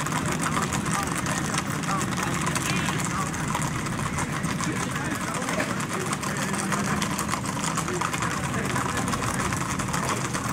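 Many horses' shod hooves clattering on a paved road in a rapid, continuous patter, over a steady low engine hum.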